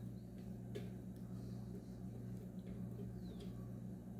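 Red silicone spatula scraping batter out of a plastic blender jar: faint scrapes and a few light clicks, with a brief squeak, over a steady low hum.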